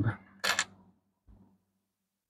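A short, sharp clink of copper pennies knocking together as one is lifted off a stack with gloved fingers, followed by a faint low bump.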